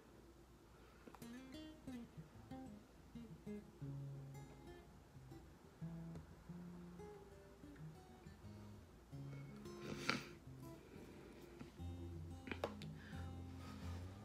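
Quiet background music of plucked string notes, like an acoustic guitar, with a single brief knock about ten seconds in.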